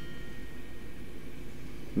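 Steady low background hum and room noise with no distinct event.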